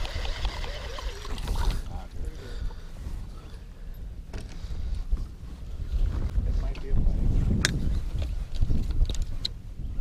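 Wind rumbling on the microphone and river water against the hull of an aluminum jon boat, heaviest in the second half, with a few sharp knocks near the end.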